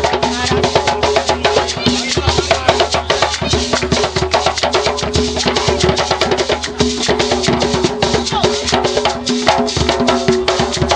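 Hand drums struck with bare palms on skin heads, played continuously in a fast, dense rhythm.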